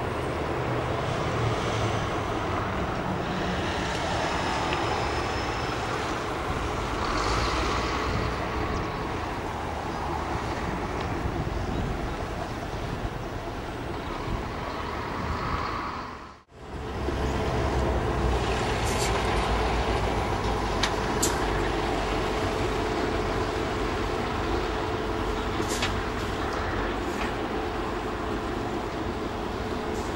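Diesel locomotive of Irish Rail's 121 class running at a distance, a steady rumble mixed with open-air harbour noise. The sound drops out abruptly for a moment about sixteen seconds in, then resumes with a steady hum and a few faint clicks.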